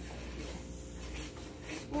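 Wooden spoon stirring thick brownie batter in a plastic mixing bowl: a faint, irregular scraping and rubbing.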